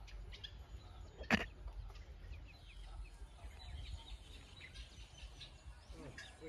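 Faint chickens clucking, with scattered small chirps, over a low steady rumble; a single sharp click sounds about a second in.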